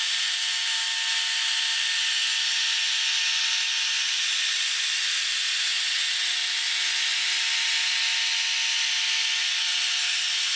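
Porter-Cable router running steadily at full speed, its bit cutting a circular hole through oak plywood. A constant high whine with a few steady tones under a dense cutting hiss.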